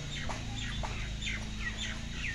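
Birds chirping: quick, short falling calls, several a second, over a steady low hum.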